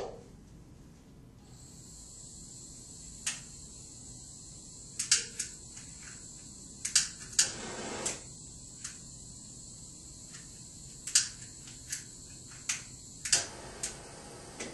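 Hand-held propane torch on a blue cylinder: a steady gas hiss starts about a second and a half in. About a dozen sharp clicks from the torch's igniter and fittings are scattered through it as the torch is lit.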